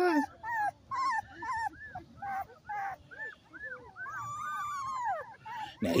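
Two-week-old American Pit Bull Terrier puppy whimpering: a rapid string of short, high cries that rise and fall, with one longer drawn-out whine about four seconds in.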